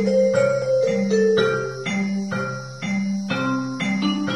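Piano played with both hands: a steady, even tune of struck notes about twice a second, with low notes under a melody.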